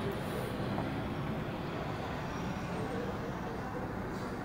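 Steady low background rumble of indoor room noise, even throughout with no distinct events.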